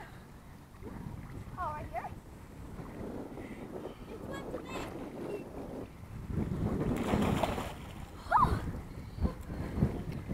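Lake water sloshing and splashing around a floating swim raft, with wind buffeting the microphone. A louder stretch of splashing and water running off comes about six to seven seconds in, as a swimmer climbs the raft's metal ladder out of the water. Two brief vocal sounds are heard, one near two seconds in and one near eight seconds in.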